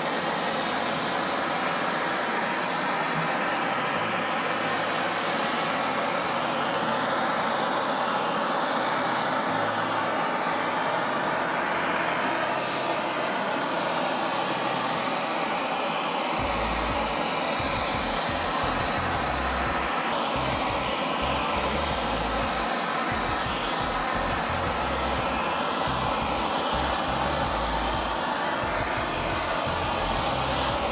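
Bernzomatic hand torch flame running steadily as it is passed slowly along a pine board, scorching the wood. A low rumble joins about halfway through.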